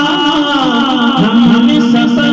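A man singing a manqabat, an Urdu devotional song in praise of Ghaus-e-Pak, with musical backing. Around the middle he settles into a long held note.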